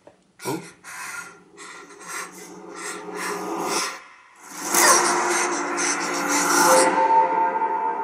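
A film trailer's soundtrack played through room speakers: heavy, rasping breathing for the first half, then loud music swelling in about halfway through with long held notes.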